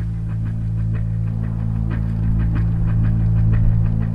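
Tense background music: a sustained low drone with a faint, quick ticking pulse, slowly growing louder.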